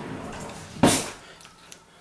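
A single short knock a little under a second in, over faint handling noise in a small kitchen.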